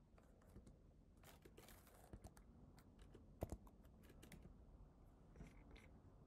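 Faint computer keyboard typing: scattered, irregular key presses, one a little louder about halfway through.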